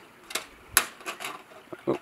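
A few sharp taps and scrapes as a wild turkey's feet shift on the roof of a wooden bird feeder, the loudest a little under a second in.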